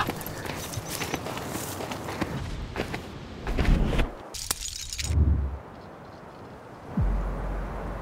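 Footsteps crunching on a dirt forest trail, a crackle of repeated sharp clicks. A little past four seconds in, a climbing shoe's velcro strap is pulled with a loud rip, followed by a low thump. From about seven seconds a steady low rumble of wind sets in.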